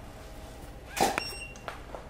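A camera shot with a studio strobe about a second in: a sharp click of the flash firing, then a short high beep as the strobe recycles.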